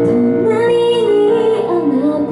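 A woman singing live into a microphone, her voice gliding between held notes, over a sustained keyboard accompaniment.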